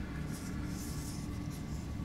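Faint rubbing and scratching of fingers on a closed titanium folding knife as it is turned over in the hands, over a steady low hum.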